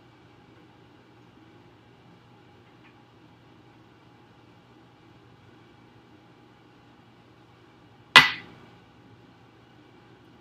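A drinking glass set down once on a kitchen countertop about eight seconds in: a sharp clink with a short ring. Before it there is only a faint steady hum.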